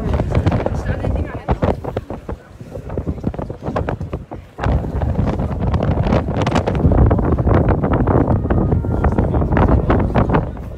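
Wind buffeting the phone's microphone, heavier from about halfway through, with people's voices in the background.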